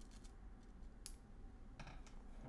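A few faint clicks at a computer, the sharpest about a second in, over a low steady hum.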